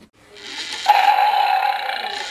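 An animal roar or growl sound effect, swelling in and jumping louder about a second in, then held.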